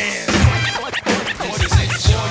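Hip hop track in a break between verses: turntable scratching over a drum beat, with repeated low kick-drum hits.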